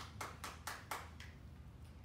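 A brief run of hand claps, about four a second, dying away about a second in, over a faint low room hum.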